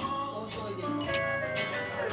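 Acoustic guitar played live, a run of picked notes, with guests' voices underneath.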